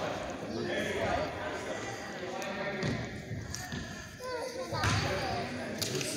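Basketball bouncing on a hardwood gym floor, a few separate thuds, under the chatter of voices echoing in a large gym.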